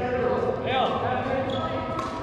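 Court shoes squeaking on a sports-hall floor during a badminton rally, short squeals that rise and fall in pitch about halfway through, with a person's voice alongside.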